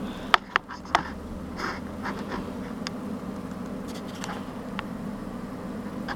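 A steady low hum, with three sharp clicks and knocks in the first second and a few fainter ticks after, from a handheld camera being moved and handled.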